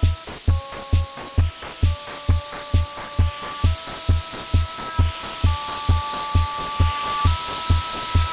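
Electronic dance track: a steady kick drum at about two beats a second under held synth chords, with a noise sweep rising and building throughout.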